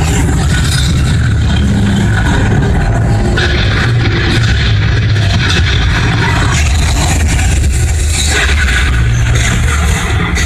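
Loud film-trailer soundtrack: music under a deep, continuous rumble of crash and explosion effects, with no let-up.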